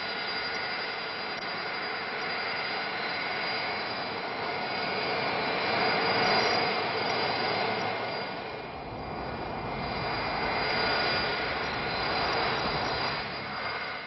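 Boeing 747's Pratt & Whitney JT9D turbofan engines in flight: a steady jet rush with a faint high whine. It swells about halfway through, eases off, then swells again near the end.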